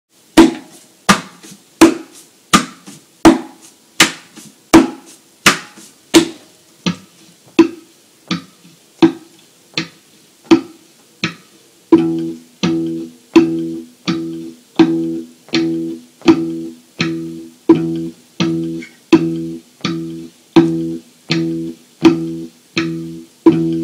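Semi-acoustic guitar body struck by hand as a percussion beat, a sharp hit about every three quarters of a second, looped with a Boss RC-30 loop pedal. About twelve seconds in, short low plucked guitar notes start landing on each beat.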